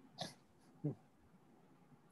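Mostly near silence on a video call, broken by two brief faint sounds: a short breathy hiss just after the start and a short low vocal sound near one second in.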